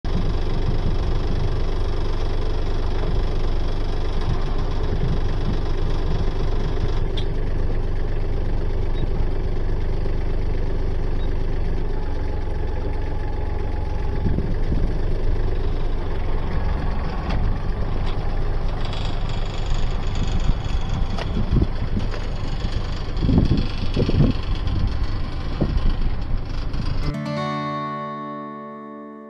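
Compact farm tractor's diesel engine running steadily close by, with some uneven swells late on. About a second before the end the sound cuts off and acoustic guitar music starts.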